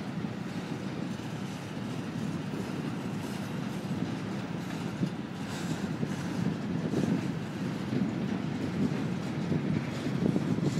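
Open-top hopper cars of a CSX freight train rolling past: a steady rumble of steel wheels on rail that grows a little louder toward the end.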